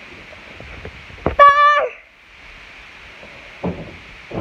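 A child's high shout or squeal, held on one steady pitch for about half a second, comes about a second and a half in. A short, lower sound follows near the end.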